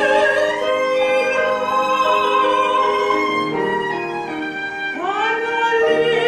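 A mezzo-soprano singing a classical sacred song with violin and piano accompaniment, held notes and a rising swoop into a new note about five seconds in.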